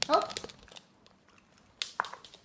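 A short spoken "oh" of praise, then quiet, then a couple of sharp clicks near the end: a small dog's claws stepping on a wooden floor close by.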